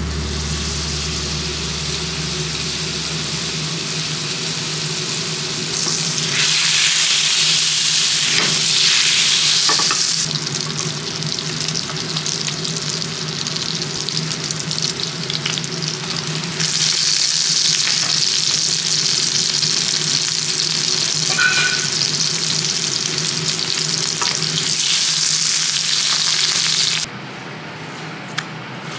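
Butter sizzling as it melts and foams in a frying pan on a gas burner. The sizzle is steady, grows louder about six seconds in and again past the middle, and cuts off suddenly just before the end.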